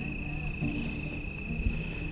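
Crickets trilling steadily over a low hum, with one soft low thump about one and a half seconds in.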